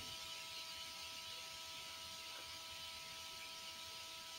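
Quiet, steady hiss with a few faint constant electrical tones: the recording's background noise, with no distinct sound event.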